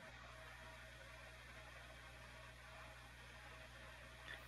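Near silence: faint steady hum and hiss of an online call's audio line.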